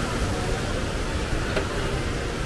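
Steady outdoor background noise with a low rumble, and one faint click about one and a half seconds in.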